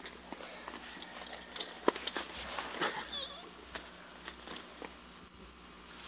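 Handheld phone being moved about while walking on dry grass: scattered clicks, rustles and knocks, with one sharp knock about two seconds in.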